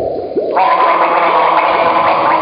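Sounds of an experimental music performance: a run of quick rising chirps, then about half a second in a dense layer of many held pitched tones sets in and continues.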